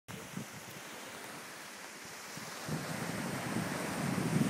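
Small sea waves washing onto a sandy, pebbly shore, with wind buffeting the microphone, the low rumble of the wind growing louder about two and a half seconds in.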